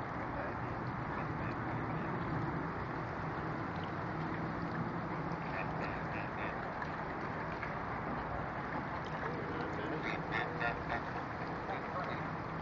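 White domestic geese calling in short, repeated honks, in a cluster about six seconds in and a livelier one near the end, over steady background noise.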